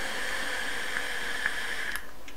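Long draw on a vape with its airflow set restricted: air hissing through the atomizer as the coil fires, a steady hiss that stops with a small click near the end.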